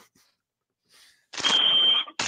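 Near silence for over a second, then a sudden burst of hiss with a single steady high-pitched electronic beep held for most of a second.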